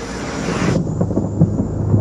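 A low ominous rumbling drone from a horror-trailer soundtrack, swelling in loudness, with a hiss that cuts off suddenly just under a second in.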